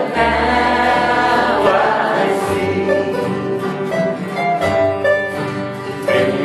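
Gospel band playing and singing in a bluegrass style: acoustic guitars, banjo and upright bass under voices singing together in long held notes.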